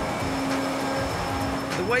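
Steady machinery noise of a trawler's fish-processing factory: a continuous hum with a low steady tone running under it. A voice starts just before the end.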